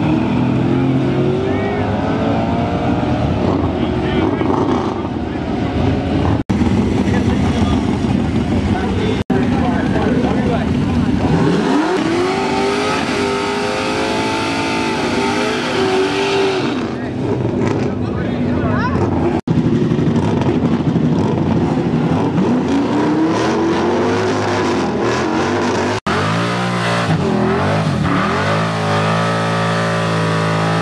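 Drag-race cars doing burnouts: engines revving hard, rising and falling, over the noise of rear tires spinning on the track, in several short clips cut one after another.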